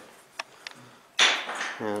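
A quiet pause broken by two faint light clicks, then an audible breath running into a man saying "and".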